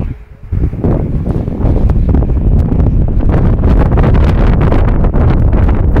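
Wind buffeting the phone's microphone: a loud, low rumbling noise that dips briefly near the start, then holds steady.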